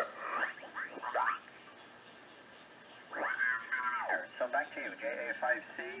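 Single-sideband voice from a BITX40 40-metre ham transceiver's speaker while it is being tuned: the received voices slide up and down in pitch as the tuning moves across them, with a lull of band hiss in the middle.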